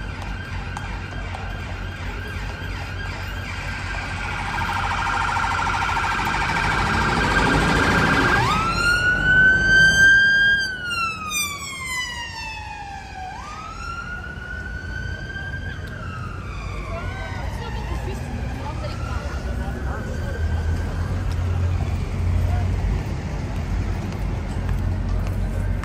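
Emergency-vehicle siren in the street: a fast warbling yelp builds over a few seconds, then changes to a slow wail that jumps up and glides down about three times, loudest at the first sweep and fading as it goes. Crowd chatter and city traffic run underneath.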